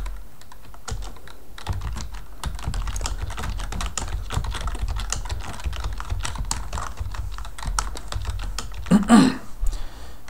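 Typing on a computer keyboard: a quick, irregular run of key clicks as a line of code is entered, over a low steady hum. A short vocal sound comes about nine seconds in.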